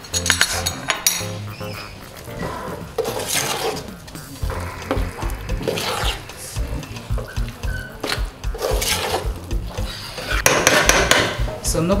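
Metal spoon stirring a thick, heavy stew in a steel pot, scraping and clinking against the pot's bottom and sides in uneven strokes, loudest near the end. The salt and seasoning are being worked into the dish.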